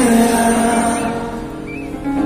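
Live concert music: piano accompaniment under a man's long sung note that slowly fades.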